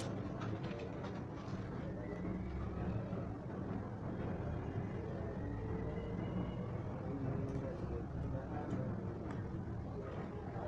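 A steady low rumble of background noise, with a few faint ticks.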